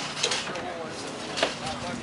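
Indistinct voices of people talking among the market stalls over a steady low hum, with a single sharp knock about three-quarters of the way through.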